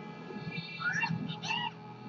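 Closing theme music with two meow-like gliding calls over it, about one second and one and a half seconds in.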